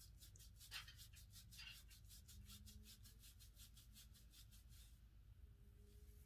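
Faint, rapid scratchy strokes of a hairbrush being pulled through thick coily hair, about five a second, with a slightly louder scrape about a second in. The strokes stop about five seconds in.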